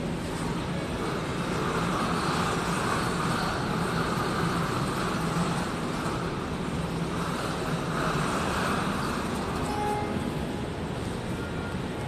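Steady low rumbling background noise of a large indoor hall, with a hiss that swells twice.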